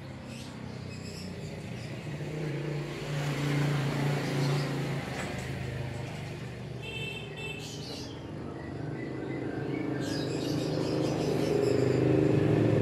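A motor vehicle's engine hum swells to a peak about four seconds in, fades, and builds again near the end. Brief high bird chirps come around a second in and again about seven seconds in.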